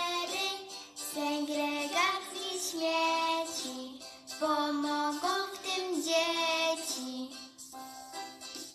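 A young girl singing a Polish children's song about caring for the Earth, unaccompanied, in phrases of held notes with short breaks between them. The singing stops shortly before the end.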